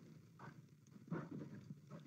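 Near silence in a pause between speech, with a few faint, soft, irregular sounds.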